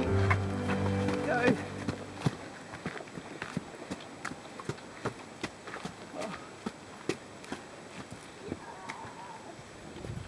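Footsteps of hikers walking on a dirt and stone track, a steady run of steps about two a second. Background music fades out in the first second and a half.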